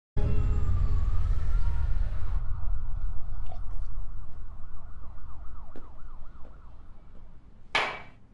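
Low city rumble with a siren wailing over and over, fading away. Near the end comes one sharp clink of a glass tumbler.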